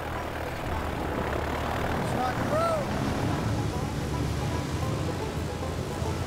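Single-engine floatplane's propeller engine running as a steady drone, at power for a takeoff run on water, with spray from the floats.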